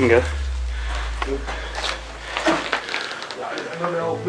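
Footsteps crunching over rubble and debris, with scattered crackles and clicks. A low rumble runs underneath and stops about three seconds in.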